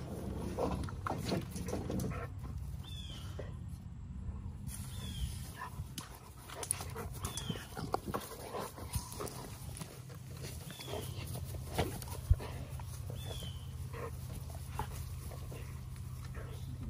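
Two male American bully dogs fighting, with growls and scuffling on grass in short irregular bursts. A single sharp knock stands out about twelve seconds in.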